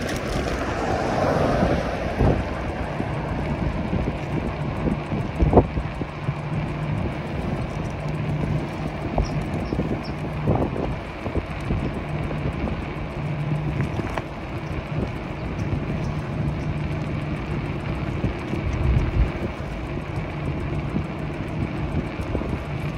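Riding an e-bike along an asphalt street: steady wind on the microphone and tyre noise, with a constant low hum from the bike. A few sharp knocks come through as the bike rides over bumps.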